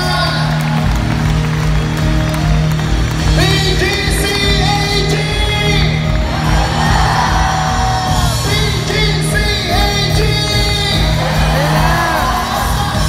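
Live worship band in a large hall, with singing voices over a held keyboard note and a pulsing low beat. Shouts and whoops from the crowd mix in.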